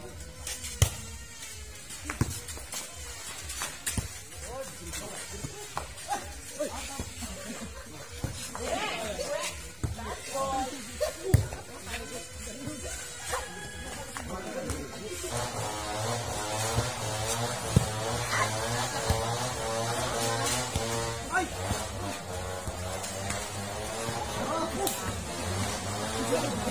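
Sharp slaps of a volleyball being hit among players' shouts and chatter, then a song with singing over a steady bass comes in about halfway and carries on.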